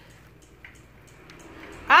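Faint rustling and a few soft ticks of thin plastic produce bags being handled, in a quiet pause between speech.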